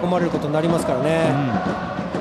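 A man's voice speaking continuously: television football commentary over the match broadcast.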